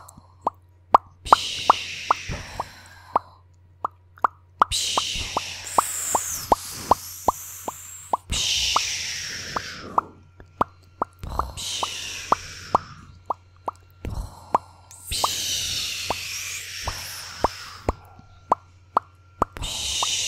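A woman's mouth imitating fireworks close to the microphone: runs of sharp tongue pops and clicks like firecrackers, alternating with hissing, fizzing bursts a second or two long.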